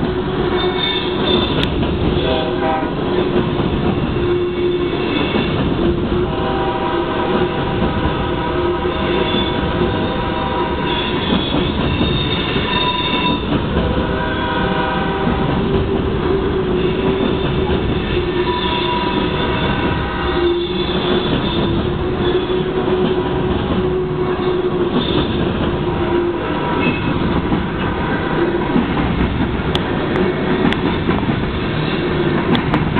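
Open-top coal hopper cars of a long BNSF freight train rolling past close by: a steady rumble and clatter of steel wheels on the rails, with pitched tones coming and going over it every few seconds.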